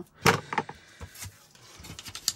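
A sharp clack about a quarter second in as a small ink pad is put down on the desk, then a few lighter knocks and the handling of paper.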